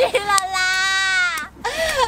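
A young woman's high-pitched laughter, a long held squeal of about a second followed by more short bursts near the end: laughing so hard she cannot go on with the take.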